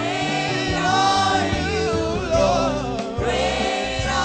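Gospel worship song: a choir singing with instrumental backing and a steady bass line.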